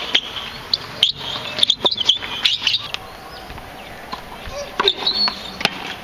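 Tennis rally on a hard court: sharp pops of a racket striking the ball and the ball bouncing, several in a row, with birds chirping in the background.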